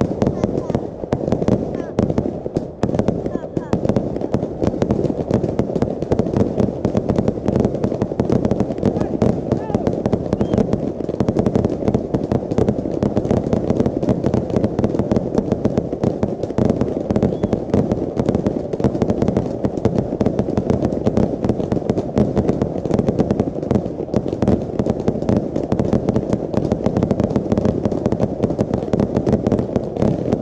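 Fireworks display: a dense, unbroken barrage of rapid bangs from launches and bursting aerial shells, the reports overlapping with no pauses.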